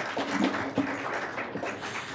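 Audience applauding, a steady patter of clapping that eases slightly toward the end.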